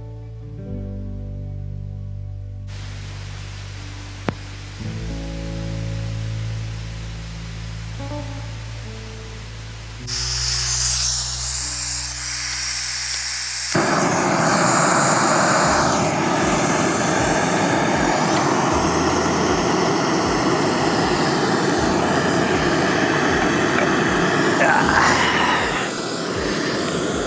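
Soft background music with held chords for about the first half. About 14 seconds in, a backpacking canister stove's burner is lit and runs with a loud, steady rushing hiss.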